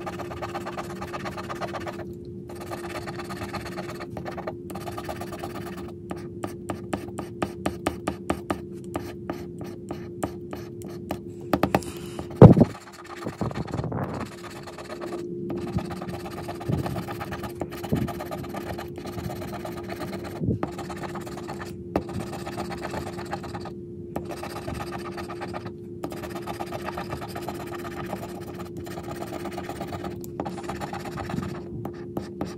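A pink plastic scratching tool scraping the coating off a lottery scratch-off ticket in many short repeated strokes, fastest in a run a few seconds in. A single sharp knock a little before halfway, over a steady low hum.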